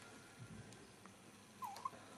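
Faint room tone, then near the end a newborn baby's brief high squeak that dips and rises in pitch, with a tiny second squeak right after.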